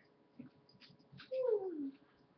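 A small dog gives one short whine that slides down in pitch near the end, after a few faint clicks.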